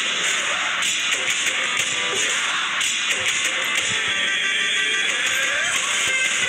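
Background music track playing at a steady level.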